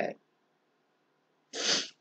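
A woman's short, sharp breath drawn in through the nose, about a second and a half in.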